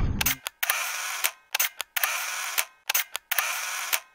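Camera shutter clicks. Groups of sharp clicks, each followed by about half a second of hiss, repeat roughly every second and a quarter.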